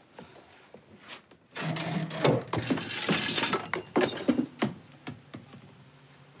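A homemade chain-reaction contraption of toy parts, tubes and building blocks running: a quick run of clicks, clacks and rattles as its parts set each other off, starting about a second and a half in and stopping about three seconds later.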